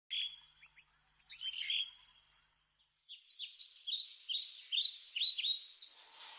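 Birds calling: a couple of short high chirps in the first two seconds, then from about three seconds in a quick run of repeated chirps, about four a second.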